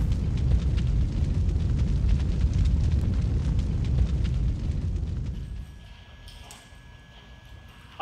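Cinematic logo-reveal sound effect: a deep rumbling boom with crackles, fading away after about five and a half seconds.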